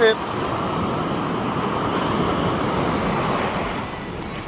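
Steady wash of surf with wind noise on the phone's microphone.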